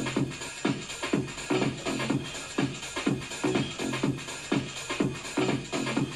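Background electronic dance music with a steady beat of about two beats a second.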